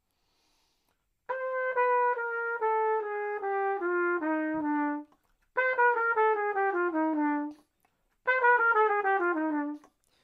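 A trumpet playing three descending bebop-scale runs, each stepping down note by note with added half steps between the ninth and the tonic and between the tonic and the flat seventh. The first run is slow, the next two are quicker.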